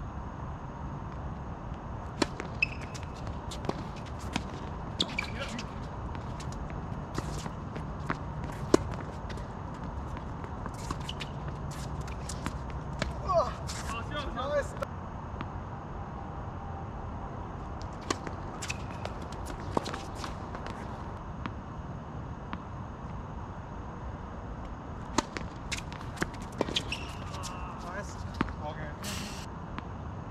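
Tennis balls struck by rackets and bouncing on a hard court during doubles rallies: a series of sharp pops in several bursts. A player's brief call comes about halfway through.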